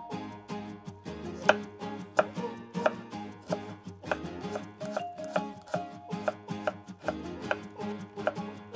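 Kitchen knife chopping garlic cloves on a wooden cutting board, sharp strikes at a steady pace starting about a second and a half in, for a coarse mince. Light background music with plucked strings plays underneath.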